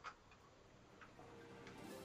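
Near silence with a few faint clicks from a small screwdriver turning tiny screws into a model car's wheel hub. Faint background music comes in after about a second.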